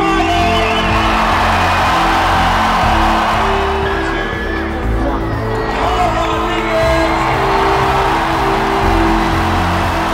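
Loud music with sustained notes and heavy bass over an arena crowd cheering and whooping.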